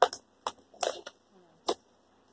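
Sharp plastic clicks, four of them spread over two seconds, as a small clip-on book light and its packaging are handled in the hands.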